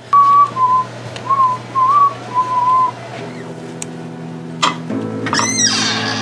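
A person whistling a short tune of a few clear notes for about three seconds. A steady low hum then comes in, with a brief swooping sound near the end.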